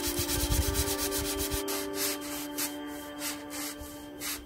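Sandpaper rubbed by hand back and forth across the weathered slatted top of a wooden garden table, in quick even strokes that slow to about three a second after a second and a half.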